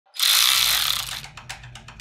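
Cordless electric ratchet running on a bolt in an engine bay: about a second of loud whirring, then a quick run of clicks that fades away.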